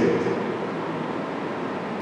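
A pause in speech: a steady hiss of room tone in a large hall, with the last words' echo dying away in the first half second.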